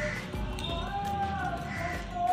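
Background music: a slow melody of held notes that glide gently up and down.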